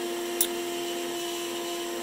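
Trim router serving as the spindle of a home-built CNC router, running steadily with a constant whine as its bit mills a block of ash. A brief tick about half a second in.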